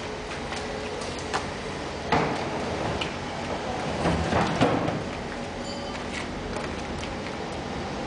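A steady machine hum, with a sharp knock about two seconds in and a cluster of clunks between about four and five seconds in.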